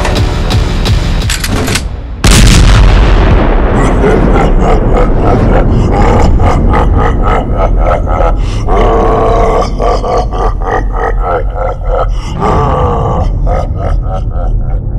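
A sudden loud boom about two seconds in, then music with a quick, even beat.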